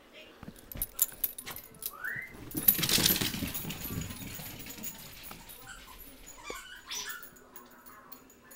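Small dogs at play: a short rising whine from a dog about two seconds in, then a louder burst of rustling and scuffling, with a few brief whimpers near the end.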